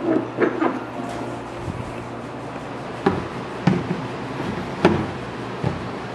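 Plastic trash-can lid being handled and fitted back onto the can: a string of separate plastic clacks and knocks, the sharpest about three and five seconds in.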